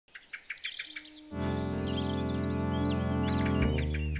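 Bird chirps, then about a second in a held chord of music comes in underneath, with the chirping carrying on over it.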